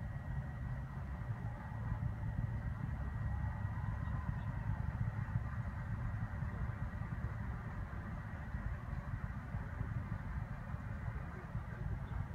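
Low, steady rumble, with a faint steady high whine over it.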